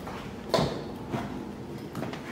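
Footsteps on a hardwood floor: two steps about two-thirds of a second apart, the first louder, over faint room tone.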